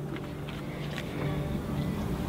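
A few faint clicks and rustles of cards being handled as one is picked up from the spread, over a steady low hum of sustained tones.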